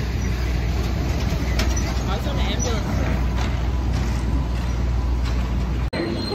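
City street traffic noise: a steady low rumble of passing vehicles, with faint voices in the middle. It cuts off abruptly just before the end.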